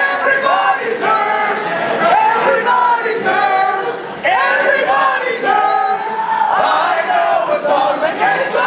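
A crowd of people singing a song together, many voices holding and gliding between sustained notes, with a brief dip about four seconds in before the singing picks up again.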